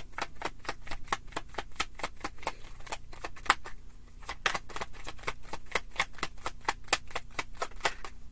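A deck of tarot cards being shuffled by hand: a quick run of crisp card snaps, about five or six a second, that stops near the end.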